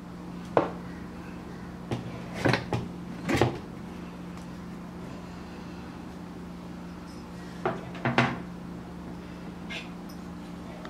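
Metal pressure cooker lid being twisted free and lifted off, with its pressure already fully released: several short clunks and clicks in the first few seconds and a few more about eight seconds in, with no hiss. A steady low hum runs underneath.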